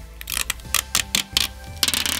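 A screen protector film being peeled off a Samsung Galaxy Fold 3's front screen: a run of sharp, irregular clicks and crackles. Faint background music runs underneath.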